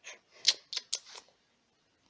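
Several sharp plastic clicks and taps over about a second, the loudest about half a second in, as a red plastic clip is lifted out of a small clear plastic cup and handled.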